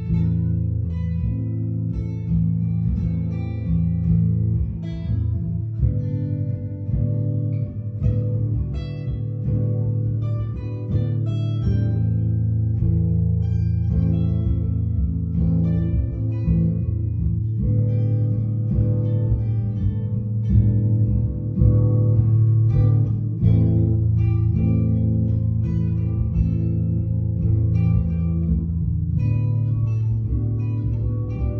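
Two guitars playing together with no vocals: a white solid-body electric guitar and a hollow-body guitar, plucked and strummed in a steady groove.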